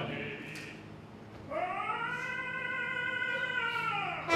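An opera singer's voice holding one long sung note, sliding up into it about a second and a half in and dropping off at the end, over a faint low held chord from the orchestra; the previous chord dies away before the note begins.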